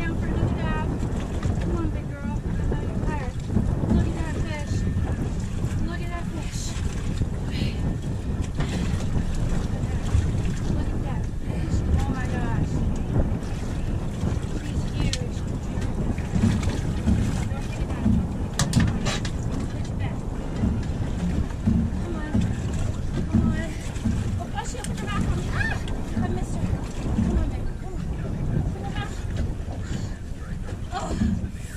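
Wind buffeting the microphone in irregular gusts, over water lapping against the hull of a small drifting fishing boat.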